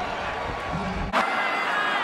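Stadium crowd noise of a college football broadcast cheering after a touchdown, cut off abruptly about a second in and replaced by a thinner, quieter crowd sound.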